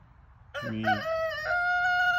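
A rooster crowing: one loud call starting about half a second in, a few short stepped notes followed by a long held note. A man's voice says a couple of words over the start of the crow.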